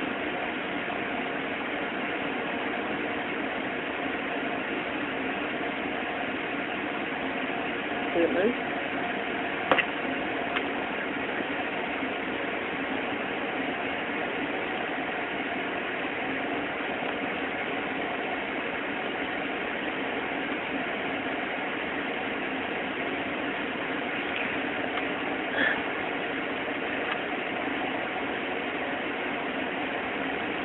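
Steady machine hum at an even level, with a couple of faint brief knocks partway through.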